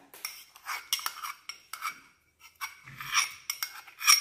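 Metal spoon scraping and tapping against a small metal cup and the rim of a stainless steel saucepan while knocking minced garlic into the oil: a run of light clinks and scrapes with a short pause midway.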